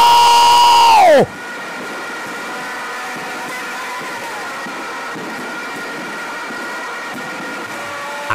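A man's long, high, steady-pitched shout that falls away about a second in: the commentator's drawn-out cry as a penalty goes in. It is followed by a steady background din of the broadcast, with faint held tones in it.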